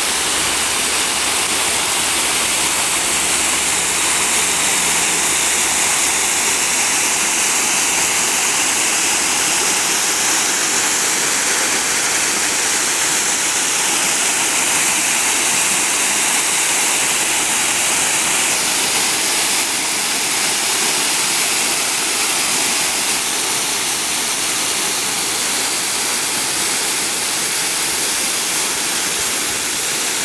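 Waterfall running low, a thin stream of water falling down a rock face and splashing into a pool below: a steady, even hiss of falling water.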